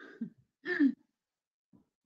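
A woman clearing her throat: two short vocal sounds within the first second.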